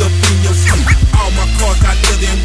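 Hip hop track: a beat with heavy, sustained bass and drum hits, with rapped vocals over it.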